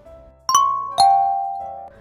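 Two-note descending chime: a bright higher note about half a second in, then a lower note half a second later that rings on and fades.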